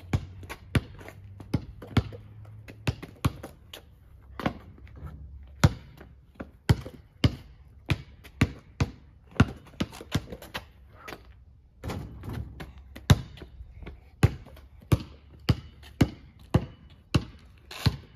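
A basketball dribbled on a paved driveway, bouncing in a quick, slightly uneven run of about two bounces a second.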